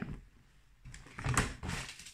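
A few light knocks and clicks of items being handled, as a spray can is set down and the next product picked up.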